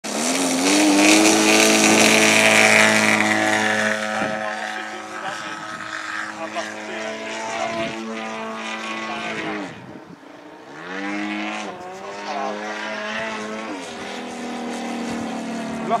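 Radio-controlled Yak 54 model plane's engine and propeller, loudest in the first few seconds at takeoff power, then rising and falling in pitch as the throttle is worked in flight. About ten seconds in it drops away almost to nothing, then comes back up.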